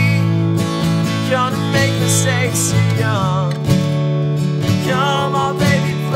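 Acoustic guitar strummed steadily in a chord pattern, with a man's voice singing wordlessly over it in places.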